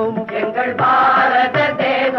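A classic Tamil film song playing: group voices over orchestral accompaniment.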